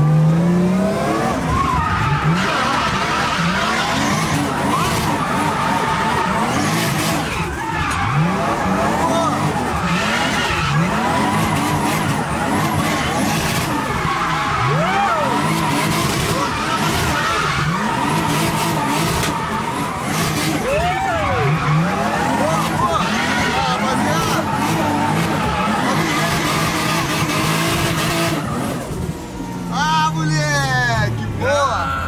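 Nissan 350Z drift car's turbocharged, forged Toyota 1JZ straight-six revving up and falling back every couple of seconds while the tyres squeal, heard from inside the cabin as the car drifts in figure-eights.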